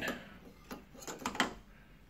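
Metal barrel of a two-inch eyepiece being lowered and seated in a telescope star diagonal's holder: a handful of light clicks and knocks, the sharpest about one and a half seconds in.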